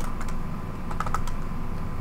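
Typing on a computer keyboard: a few scattered key clicks, with a quick run of keystrokes about a second in.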